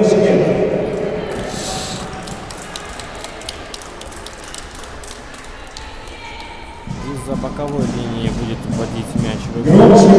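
Music over the sports hall's PA fading out in the first couple of seconds, then the echoing hall with a basketball bouncing and scattered knocks on the court. Voices rise from about seven seconds in, and a loud steady pitched sound comes in just before the end.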